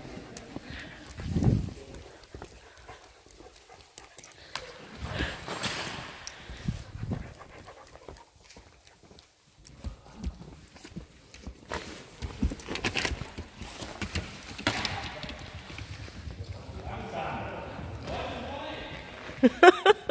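A dog's claws clicking on a hard sports-hall floor as it walks and trots about, in irregular runs of taps.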